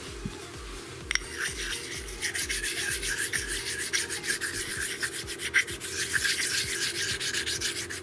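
An oil stone rubbed quickly back and forth across the gasket face of an aluminium water pump cover, lapping the face flat and clean. The scraping strokes start about a second in and continue at a steady pace.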